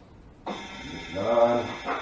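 A steady hiss with a faint high whine starts abruptly about half a second in and runs on evenly. A short voice sound rises over it near the middle.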